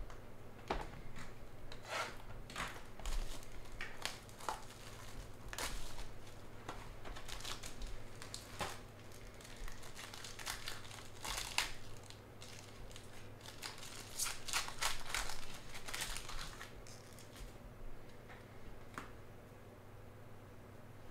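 Foil wrapper of a trading-card pack being torn open and crinkled by hand: a long run of irregular crackly rustles that thins out near the end.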